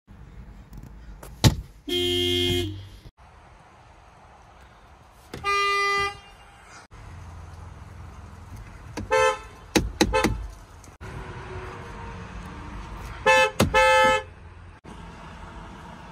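Volkswagen car horns sounded in a series of separate clips: a click, then a blast of under a second, another blast a few seconds later, two short toots about nine and ten seconds in, and a quick double honk near the end.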